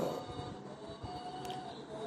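A pause in a man's speech that leaves only faint recording hiss, with a weak steady tone through the middle.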